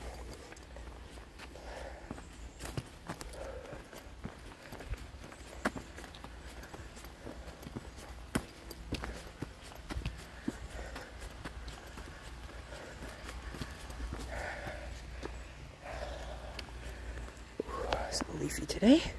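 Footsteps on a dirt forest trail covered in dry leaves and roots, with irregular crunches and sharper clicks as the walker steps along.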